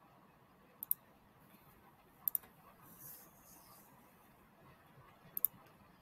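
Computer mouse clicking: three sharp clicks, each a quick pair, about a second in, just past two seconds and near the end, with quiet room tone between.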